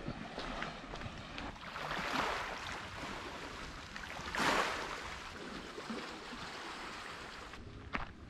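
Small sea waves washing against the rocky shore, swelling about two seconds in and more strongly at around four and a half seconds, with faint footsteps on the path.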